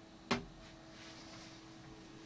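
A single light click as a small plastic box on BNC connectors is let go and settles on the metal top of a bench instrument, about a third of a second in, over a faint steady hum.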